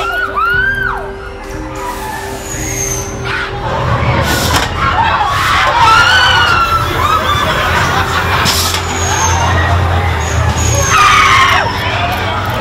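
Haunted-house soundtrack: a loud, steady low drone with music, broken by several sharp bangs, and high gliding cries and voices over it.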